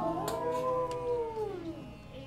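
A long held musical note that gently rises, then slowly falls in pitch and fades away near the end.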